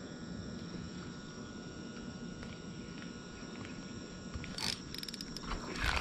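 Steady high chirring of night insects, crickets or similar, over a low background hiss. Near the end come a short sharp sound and then a cluster of louder sudden noises as a fish is brought up at the dock.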